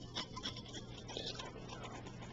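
Close-miked ASMR trigger sounds: a few sharp clicks in the first half second, then softer scratchy rustling. Underneath is the steady hiss and hum of a cheap, noisy recorder.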